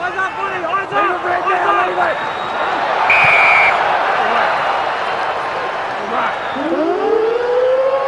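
Stadium full-time siren, starting about six and a half seconds in, rising in pitch and then held as one steady tone over the noise of the crowd. Near the middle, a short referee's whistle blast sounds.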